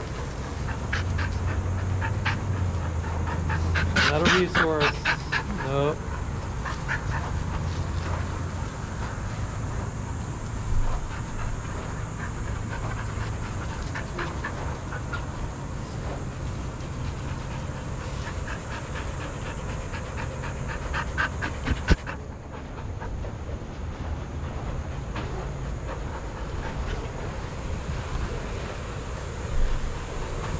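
Dogs panting in a sandy play yard, with a brief burst of high, wavering whining about four seconds in. A low rumble runs under the first half.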